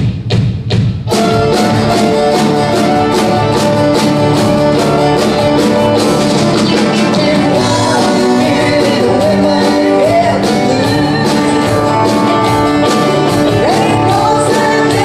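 Live country band: a few sharp drum hits in the first second, then the full band with drum kit and acoustic guitar playing at a steady beat. A woman's singing voice comes back in the later seconds.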